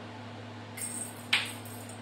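Handling noise as objects are picked up and moved: a short rustle, then one sharp click about a second and a half in. A steady low hum runs underneath.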